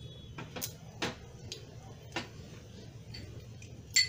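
Mustard seeds starting to crackle in hot oil: scattered, irregular sharp pops, roughly one or two a second, over a faint low background.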